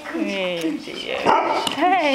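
Barbet puppies barking and yipping in play, mixed with people talking and laughing.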